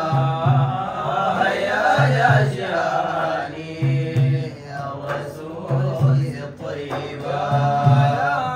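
Male group singing Sudanese madih, Arabic praise song for the Prophet, in a chanting style, accompanied by frame drums. Pairs of deep drum strokes repeat about every two seconds under the voices.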